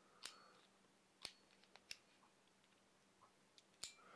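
A few short, sharp clicks from a Manfrotto 234RC tilt head being handled, as its quick-release lock and plate are worked by hand; between the clicks it is near silence.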